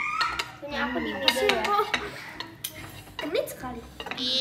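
Metal spoons clinking and scraping against a non-stick frying pan as rolled egg omelette is lifted out onto a plate, with a string of short sharp clicks.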